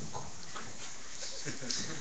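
A pause in speech: steady low room noise, with a brief faint voice sound about one and a half seconds in.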